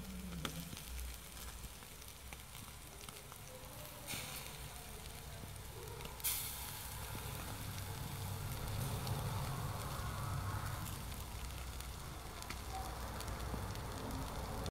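Sardines sizzling in a wire grill basket over hot charcoal, with scattered small crackles. There is a sudden louder hiss about four seconds in and a stronger one about six seconds in.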